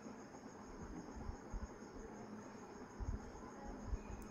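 Faint dry rustling of roasted poha (flattened rice) being tossed with a spoon in a steel bowl, with a few soft knocks, over a steady high-pitched whine.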